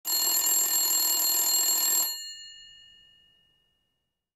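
Telephone bell ringing for about two seconds, then stopping and fading out over about a second.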